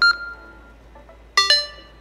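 Push-to-talk signalling tones: a short beep right at the start as the talker releases the button and ends his transmission, then about 1.4 s in a quick two-note chirp as the handheld radio on the far side keys up to answer.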